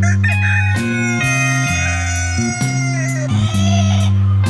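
Background guitar music with a steady bass line. Over it a rooster crows once: a long call that falls in pitch near its end.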